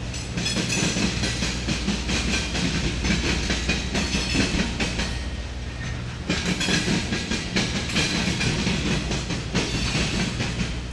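Freight train's refrigerated boxcars rolling past, their steel wheels clattering over the track in a fast run of knocks over a steady low rumble. The clatter eases for a moment about five seconds in, then picks up again.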